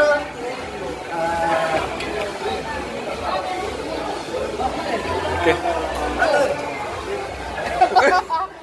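Several people chattering at once in a group, voices overlapping.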